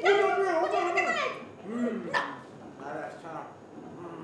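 High-pitched wordless vocal cries: a long wavering one at the start, a shorter one about two seconds in, then fainter ones.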